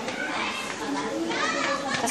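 Several children talking and calling out at once in the background, a busy mix of young voices.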